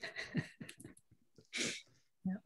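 A person's breathy laughter, with a short puff of breath about one and a half seconds in.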